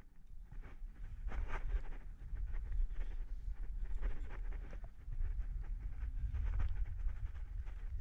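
A rock climber's heavy breathing on the wall, a few audible breaths over a steady low rumble of wind on the camera microphone.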